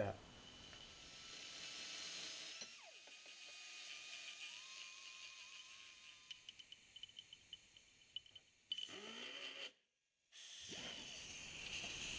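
Faint handling of small metal CV joint parts: a scatter of light clicks over a low background, with the sound cutting out briefly near the end.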